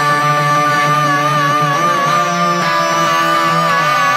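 A live song: a man's voice holds one long high note with vibrato over chords on a hollow-body electric guitar.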